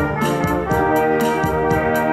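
Small brass ensemble of trumpets and trombone playing sustained chords in a pop arrangement, over a drum-kit beat whose cymbal ticks come about four times a second.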